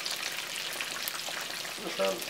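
Swai fish fillets frying in hot oil in a cast-iron skillet: a steady sizzle with fine crackling.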